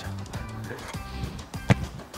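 Background music with one sharp thud near the end: a football struck on the volley.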